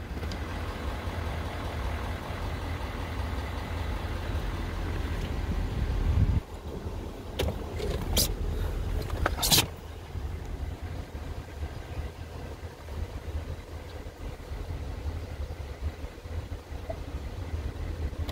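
Ford 6.7-litre Power Stroke diesel V8 idling steadily. About six seconds in, the sound drops, a few sharp clicks or knocks follow, and after that the idle is quieter.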